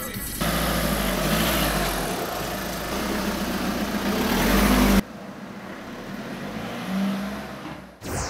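Car engine and road noise building in loudness as the car accelerates. It cuts off abruptly about five seconds in, leaving a quieter, steady rumble.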